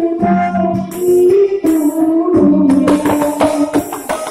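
Live Malay Jepin accompaniment music from a small traditional ensemble: a violin holds a sustained melody over repeated hand-drum strokes and cymbal hits.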